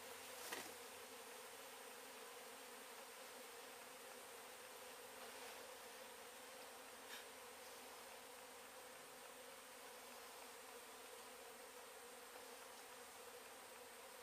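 Faint, steady buzzing of a mass of honey bees in and around an open hive box, with a single light knock about half a second in.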